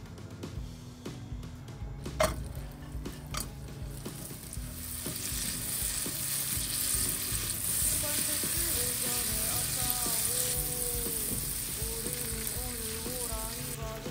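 Butter sizzling in a frying pan as strips of half-dried gwamegi fish pan-fry in it. Two sharp clicks come in the first few seconds. The sizzle then builds to a steady hiss about four seconds in, and it drops away just before the end.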